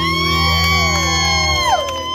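A live band's final held chord, with a long high note over a sustained bass note, ringing out and cutting off near the end, while the audience whoops.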